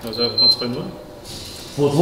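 Men's voices talking, with a faint thin high-pitched tone under the first words.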